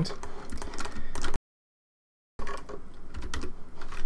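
Clatter of computer keyboard keys being pressed, a quick run of separate clicks, cut by about a second of dead silence midway.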